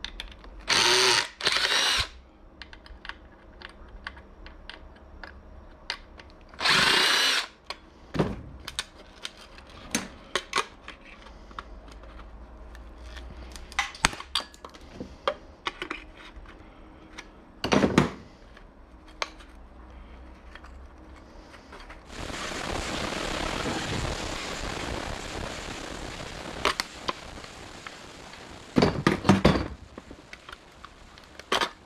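Cordless power driver running in short bursts, backing screws out of a TV power-supply circuit board: three brief runs in the first seven seconds and another later. Scattered clicks and taps of hand tools on the board run through it, and a steady, even rushing noise lasts about five seconds past the middle.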